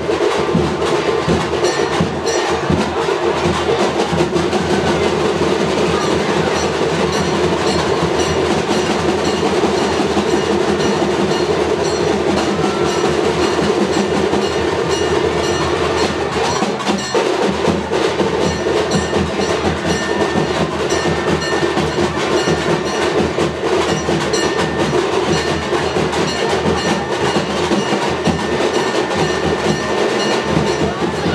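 Loud, continuous percussion music with a dense, fast beat.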